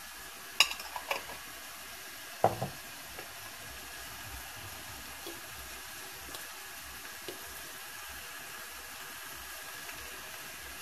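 Chicken legs and onion frying in a stainless steel pot, with a steady sizzle. A few light knocks come in the first few seconds, the loudest about half a second in and another about two and a half seconds in.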